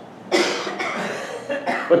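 A man coughs once, about a third of a second in, and the sound trails off over about a second.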